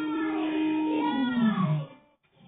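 A voice singing one long held "ohh" note that slides down in pitch near the end and then stops.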